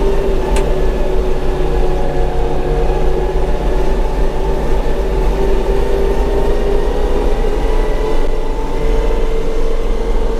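Tümosan 6065 tractor's diesel engine running steadily under way, heard from inside the cab, with a steady whining tone whose pitch rises slightly near the end. A single short click sounds about half a second in.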